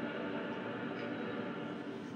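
A mixed choir singing a soft passage, its held notes faint and blurred together.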